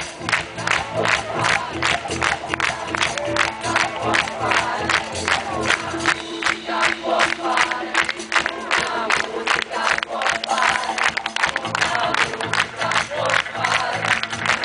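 Live pop band playing at a concert, with a fast, steady beat and a crowd singing and shouting along. The low bass line drops out for a few seconds past the middle and comes back near the end.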